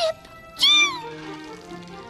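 A cartoon Chao's short, high-pitched cry: one call that rises and falls in pitch, a little over half a second in. Soft background music continues under it.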